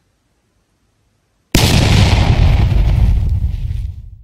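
About a second and a half of silence, then a sudden loud hit with a rushing noise that slowly fades out: the sound effect of a channel logo sting.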